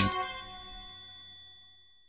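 A click and a bell-like ding sound effect, as used with a subscribe-button animation. It rings with several clear tones and fades away over about a second and a half.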